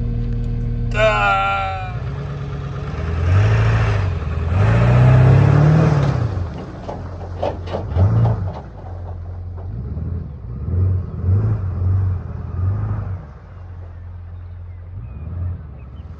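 Cat 259D skid steer's diesel engine running, revving up and back down several times. A short "ah" from a voice about a second in.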